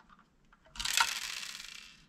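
Small plastic LEGO pieces pouring out of a tipped-up toy garbage truck body and clattering onto a wooden tabletop. It is a dense rattle of about a second, starting a little under a second in and tailing off.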